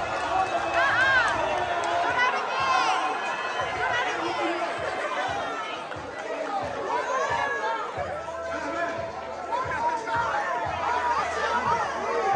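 Crowd of many people talking and shouting at once in a large hall, overlapping voices with a few high-pitched shouts.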